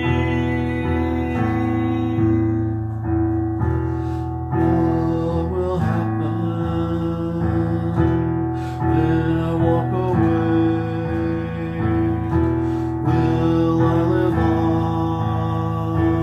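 Electronic keyboard playing sustained chords in a slow progression, the chord changing every second or so, with a man's voice singing along over it.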